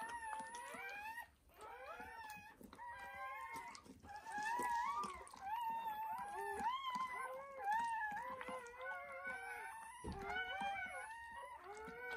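Dog whining: high-pitched, wavering cries that run almost unbroken, with short lulls about a second in and again near ten seconds.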